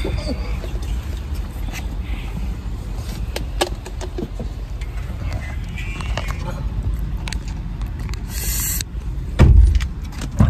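Steady low rumble of a car cabin in the rain, with scattered sharp clicks and a short hiss, then a loud thump about half a second before the end.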